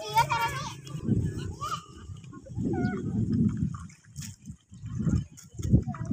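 Children's voices at the water's edge: a high, wavering call about a second long at the start, then scattered short calls. Irregular low rumbling noise on the microphone runs underneath.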